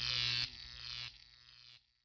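The closing tail of a hip hop track fading out: a low buzzing tone with short repeating echoes, dropping in steps and dying away to silence near the end.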